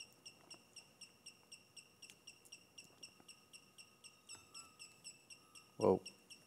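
Brushless motors of an Alexmos SBGC 3-axis gimbal chirping faintly, about five short high chirps a second, as the auto PID tuning shakes the roll axis to test settings one at a time. A thin steady tone joins in for a couple of seconds past the middle.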